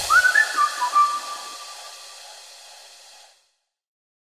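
Background music ending on a short whistled phrase: a quick rising slide, then a couple of lower held notes, trailing off over about three seconds.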